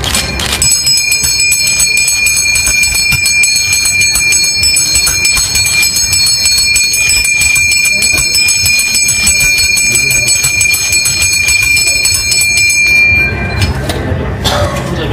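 Brass temple puja hand bell rung continuously with rapid clapper strikes, a loud steady high ring with several clear overtones. It starts about half a second in and stops shortly before the end.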